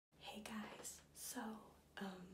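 A woman speaking to the camera in a hushed, half-whispered voice, kept really quiet because it is very early in the morning.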